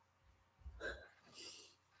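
Near silence with a brief, soft vocal sound from a person a little under a second in, then a short breathy hiss.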